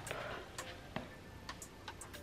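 Faint, sharp ticks at a steady pace of about two a second.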